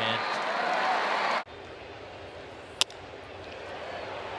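Ballpark crowd noise from a broadcast, cut off abruptly about a second and a half in and replaced by a quieter stadium background. Near the three-second mark comes a single sharp crack of a bat hitting a pitched ball.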